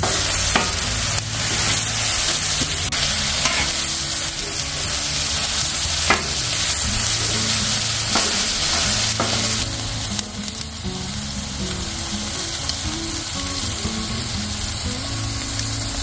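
Ground venison sizzling on a hot flat-top griddle while a metal bench scraper chops and scrapes it across the steel, with sharp scraping clicks now and then. The sizzle eases a little about ten seconds in.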